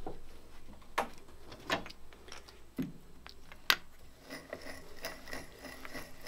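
A few separate knocks and clicks, then the light, quick ticking of a hand-cranked egg-beater drill's gears turning as the bit bores into the wooden gunstock.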